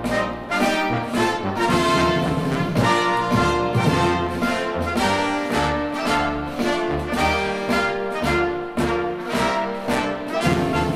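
Orchestra playing a national anthem arrangement, with the brass section leading.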